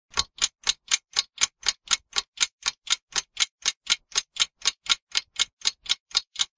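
Clock ticking fast and evenly, about four sharp ticks a second, like a clock sped up to show time passing quickly.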